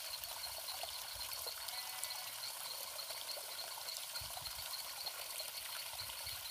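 Faint outdoor ambience: a steady hiss with a thin, rapidly repeated high chirping throughout, and a brief low rumble about four seconds in.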